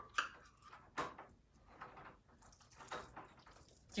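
A spoon scraping and tapping cooked rice out of a metal measuring cup into a pot: a few faint clicks spread out, with a short scrape a little past the middle.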